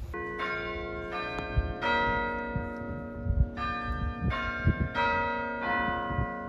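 Church bells ringing: about eight strikes on several bells in turn, each note ringing on under the next.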